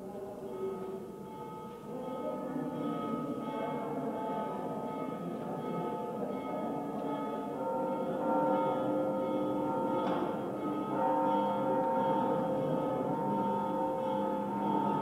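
A Oaxacan village brass band (sousaphone, saxophones and other winds) playing slow, held chords that swell louder a couple of seconds in and again past the middle, with a single percussive stroke about ten seconds in.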